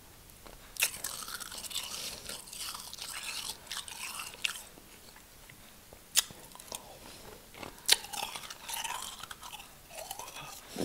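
Close-miked chewing of packed real snow: soft, crackly crunching, broken by three sharp, loud crunches, about a second in, about six seconds in and near eight seconds.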